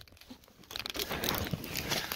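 Close rustling, crinkling and crunching of handling and movement through dry brush and leaf litter. It starts about two-thirds of a second in, after a near-quiet moment, and runs on as a busy scratchy crackle.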